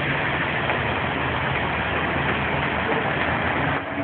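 A heavy vehicle's engine idling with a steady low hum under the general noise of city street traffic. The hum fades near the end.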